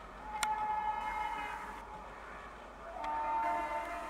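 Locomotive horns sounding twice: a blast of about a second and a half, then a shorter blast at a slightly higher pitch about three seconds in.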